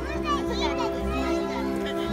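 Music with steady held notes, and a crowd of young children chattering and calling out over it.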